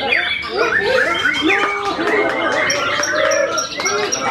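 Several white-rumped shamas singing at once: loud, varied whistles and quick phrases overlapping, with a run of short high pips in the last second.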